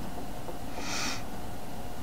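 A man's short sniff or sharp breath near the microphone about a second in, over steady background hiss.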